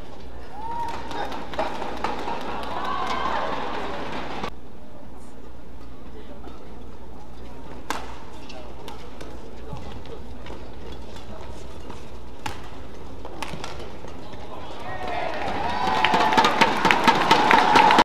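Indoor badminton arena during a rally: shouted voices over a steady low hum, with a few sharp cracks of a racket striking the shuttlecock. In the last few seconds the crowd breaks into loud clapping and cheering as the match-winning point is won.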